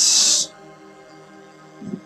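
A short, loud burst of hiss in the first half second, then faint background music with steady held tones.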